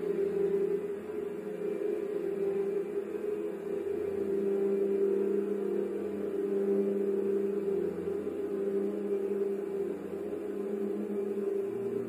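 Symphony orchestra playing a slow passage of long, held low notes. A lower note enters about four seconds in.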